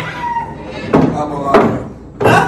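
A shot on a pool table: two sharp knocks about half a second apart as the cue strikes the cue ball and the balls knock together.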